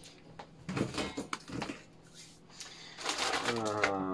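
Plastic grocery bags rustling with light clicks as ingredients are handled on a kitchen counter, then a man's drawn-out voice, the loudest sound, for the last second.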